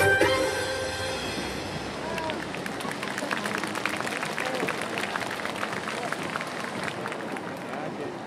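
Violin-led Middle Eastern dance music fading out in the first second or two, followed by scattered audience clapping and crowd chatter.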